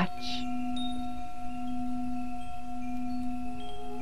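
Ambient meditation music: a steady low drone with a higher held tone above it, and scattered short, high chime notes ringing out over them.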